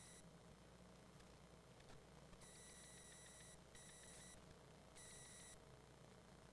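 Near silence with faint electronic beeping: a steady high tone with overtones sounds briefly at the very start, then again about two and a half seconds in for just over a second, followed by two shorter beeps.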